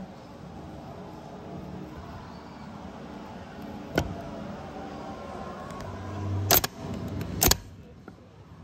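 Starter motor from a 6.5 diesel being bench-tested: a click about four seconds in, then a short whir building up, and two sharp clacks about a second apart near the end as the solenoid throws the pinion out and the motor turns. The starter is working; the no-start lies with the chewed-up flywheel.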